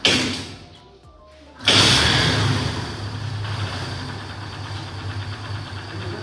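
Kawasaki Barako 175 single-cylinder four-stroke engine being started. A sudden burst at the very start dies away within a second. About a second and a half in the engine catches and runs steadily, loud at first, then settling to a fast idle.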